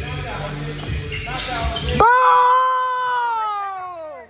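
A basketball bouncing on a hardwood gym floor amid players' movement and voices in a large echoing hall; about halfway through, one voice lets out a long drawn-out call that slowly falls in pitch.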